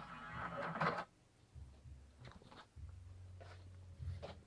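Numark CDX DJ CD player loading a disc: a short scraping, rustling sound in the first second, then a faint low whir with a few soft clicks as the drive takes the disc in and reads it.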